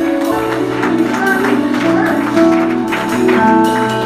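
Live worship band playing a slow song: held keyboard chords over a bass line, with light percussive hits.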